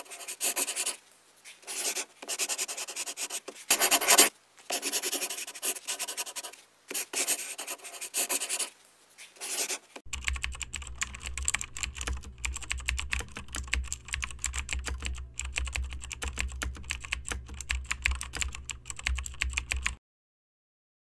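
Computer keyboard typing sound effect: rapid, dense clicks over a low hum, starting about halfway in as text appears on screen. Before that, a run of scratchy strokes, each up to about a second long with short gaps, like writing or scratching.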